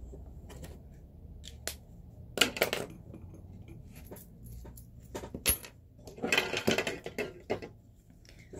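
Small metal jewellery parts and hand tools clinking and tapping as they are handled on the bench, in irregular clusters of light clicks, busier in the second half.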